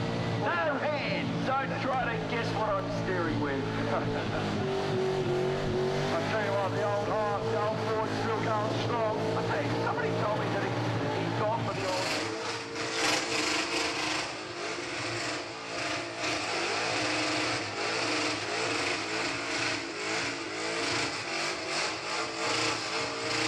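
Ford Falcon XY GT's V8 held at high revs through a burnout, tyres spinning and squealing, the engine note wavering up and down. About halfway the sound turns harsher and hissier, a steadier mix of engine and tyre noise.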